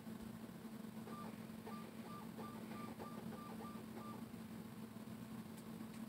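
A row of about eight short, evenly spaced electronic beeps, each with a small click, over about three seconds, like buttons pressed on a keypad. A steady low electrical hum runs beneath.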